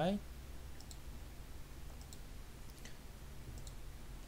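Several faint computer mouse clicks, irregularly spaced, some in quick pairs.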